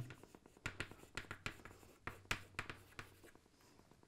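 Chalk writing on a blackboard: a run of short, faint scratchy strokes and taps as letters are written, stopping a little after three seconds in.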